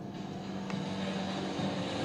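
The intro of a pop song's music video playing from a speaker: a steady low drone under a rushing noise that slowly grows louder.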